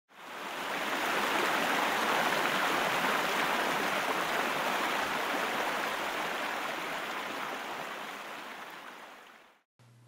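Rushing whitewater of river rapids: a steady, even rush that fades in over the first second, slowly dies away and stops shortly before the end.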